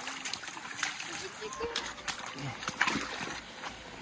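Footsteps splashing and sloshing through a shallow, muddy, rocky stream, several separate splashes, with faint voices.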